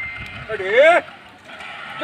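A man's drawn-out, sing-song call, once, about half a second in, its pitch rising and then falling: the monkey handler's chanting voice directing his performing monkey.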